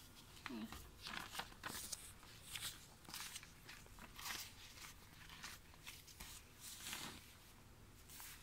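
Soft, scattered rustles and brushing of paper book pages and bedding under a child's hands, in short bursts about one or two a second, with a brief faint vocal sound about half a second in.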